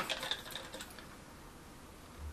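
Faint small clicks of a plastic pump-spray top being twisted on a hair and body mist bottle, dying away after about half a second into quiet room tone.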